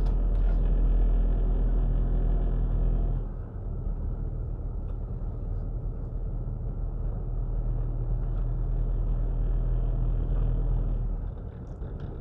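Car engine and road rumble heard from inside the cabin while driving slowly along a street. The sound is louder at first and drops noticeably about three seconds in, then holds steady and low.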